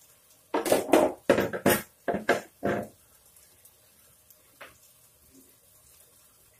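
A quick run of about six knocks and clatters of kitchen utensils over two and a half seconds, then one faint click near the end.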